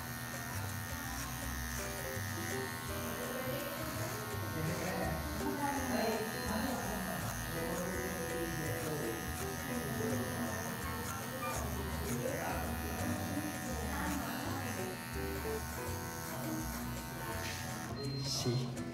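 Electric hair clipper with a number 2 guard running with a steady buzz as it cuts short hair at the side and back of the head, graduating the cut. Background music plays over it.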